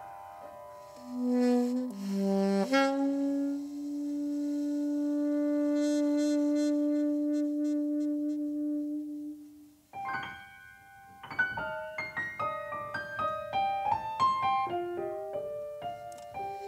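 Small jazz band with saxophone and acoustic piano playing a slow ballad. The saxophone plays a short low phrase and then holds one long, steady note for about seven seconds over soft piano; after about ten seconds the piano moves into a busier line of quick notes and chords.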